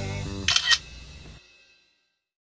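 A camera-shutter click, two quick snaps about a quarter of the way in, as a phone selfie is taken, over background music that cuts off suddenly past the middle.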